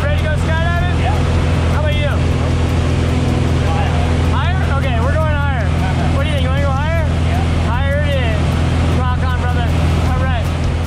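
Light aircraft's piston engine and propeller droning steadily, heard from inside the small cabin, with voices calling out over the noise now and then.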